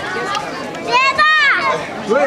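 Crowd of spectators chattering, with a child's high-pitched shout about a second in that rises and falls over about half a second.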